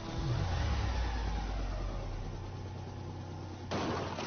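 Film sound effects of a car stunt: a low, steady engine drone that dips briefly in pitch just after it starts, then a sudden crash near the end as the flipping car hits the road.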